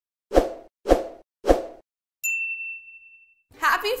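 Intro sound effects: three short pops about half a second apart, then a single high bell-like ding that rings out and fades over about a second.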